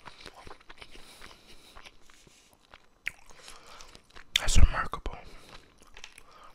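Close-miked chewing of sushi: wet mouth sounds with many small sharp clicks. About four and a half seconds in, a brief, loud muffled vocal sound or breath lands right on the microphone.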